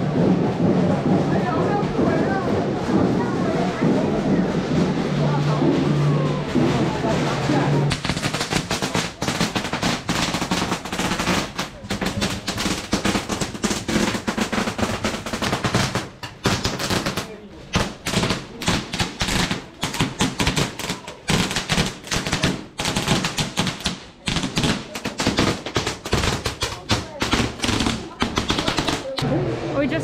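A long string of firecrackers going off in rapid, uneven cracks, starting abruptly about eight seconds in and running until just before the end. Before the firecrackers, procession music with sustained low tones.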